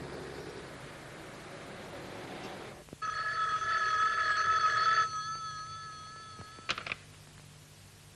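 A desk telephone rings once for about two seconds, starting about three seconds in, then trails off more faintly. A couple of sharp clicks follow shortly after.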